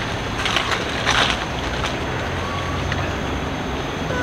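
Twigs and dry leaves crackling and rustling in two short bursts, about half a second and a second in, over a steady low background rumble.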